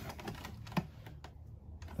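Light clicks and handling noise from a circuit board and its wires being held and shifted against a plastic and metal electrical panel frame, with one sharper click just under a second in.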